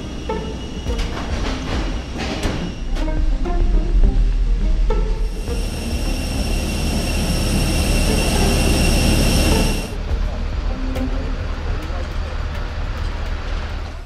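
Clunks and rattles of a metal airline baggage container being pushed over a roller-bed loading deck. From about five seconds in, a jet airliner's engines run with a steady high whine over a low rumble, which cuts off suddenly about four seconds later.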